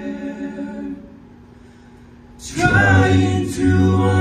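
Male a cappella group singing without instruments: a held chord that softens to a quiet hold about a second in, then the full ensemble comes in loudly about two and a half seconds in, with a deep bass voice underneath.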